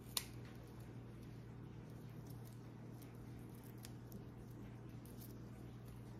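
Small scissors snipping once through a spider plant stem, a sharp click just after the start, then a few faint ticks over a low, steady room hum.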